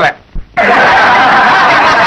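A crowd of people laughing together, starting about half a second in and running loud and even for about a second and a half.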